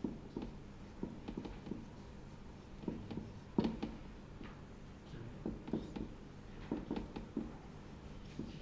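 Felt-tip marker writing on a whiteboard: short, irregular strokes and taps in uneven clusters as lines of script are drawn.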